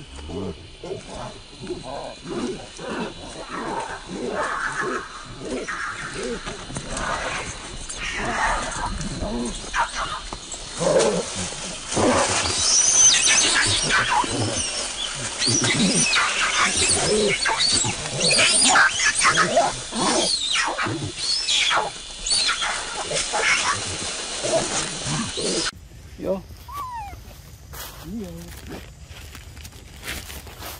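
Young macaques screaming and squealing in a scuffle, many overlapping cries that grow louder about halfway through. The cries cut off abruptly near the end.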